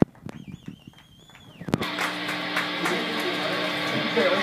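Electric guitar through a club amplifier: a high wavering tone at first, then a click about two seconds in and a steady held drone from the amp.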